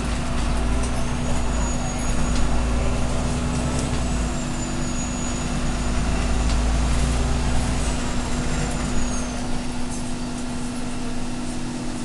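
Cabin noise inside an Irisbus Citelis Line city bus under way: diesel engine rumble and road noise with a steady hum and light clicks. The deep rumble eases about eight seconds in.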